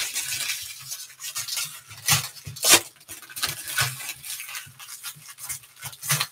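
Foil trading-card pack wrappers crinkling and tearing as packs are ripped open by hand, with the sharpest rips about two seconds in and again near three seconds.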